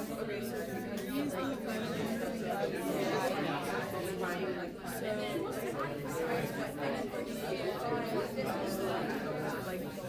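A classroom of students all talking to one another at once, an unintelligible babble of many overlapping voices.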